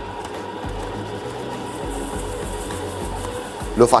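Planetary stand mixer running at medium speed, its hook kneading a stiff bread dough, with a steady motor hum and a regular low beat about twice a second as the dough turns in the bowl.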